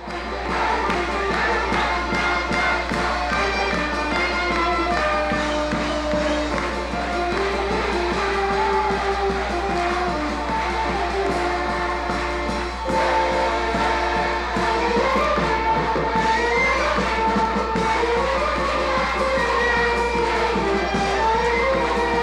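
A group of voices singing a melody together, with a steady low hum underneath.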